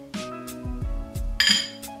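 Background music with a steady beat, and about one and a half seconds in a single bright, ringing clink of glass against a glass mason jar as salt is spooned in from a small glass bowl.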